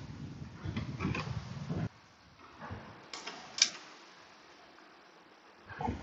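Faint clicks and handling noise from fastening a screw into a Kawasaki Z300's plastic side fairing, with one sharp click about three and a half seconds in.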